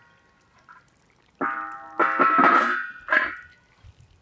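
Metal cookware ringing as it is knocked and scraped, several clanks with a lingering tone. The first comes about one and a half seconds in, the loudest stretch just after two seconds, and a shorter one a second later.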